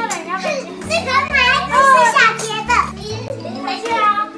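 Young boys' high-pitched excited voices, shouting and squealing, over background music with low sustained bass notes.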